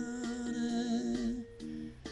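A man's voice holding a wavering note, hummed, over a karaoke backing track. It fades away about a second and a half in.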